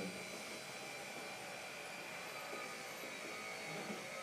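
Steady low-level background hum and hiss with a few faint, unchanging high tones: room tone with no distinct events.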